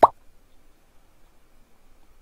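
A single short pop right at the start, followed by faint room tone.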